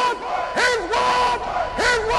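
Voices calling out in drawn-out shouts, each swooping up to a held pitch and then falling away, about three in the two seconds.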